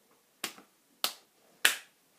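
Three sharp hand claps, evenly spaced about half a second apart, in the rhythm of a children's hand-clapping game.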